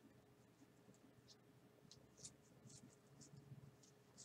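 Very faint, scattered soft flicks and rustles of a stack of trading cards being sorted by hand, card sliding against card.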